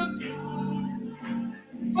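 Electronic keyboard holding sustained chords in a gap between sung phrases of a gospel song, the sound thinning out briefly near the end before the singing resumes.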